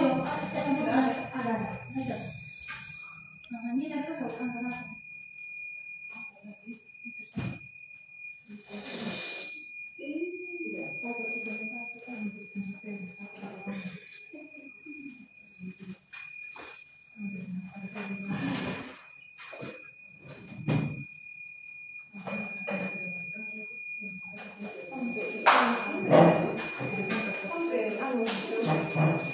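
A steady high-pitched electronic tone sounds throughout, under quiet, intermittent voices and a few knocks, the loudest about three-quarters of the way through.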